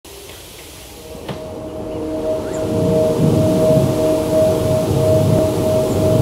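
A steady, slightly pulsing droning tone that swells in over the first three seconds, with a low rumble beneath it and a single faint click just after the first second.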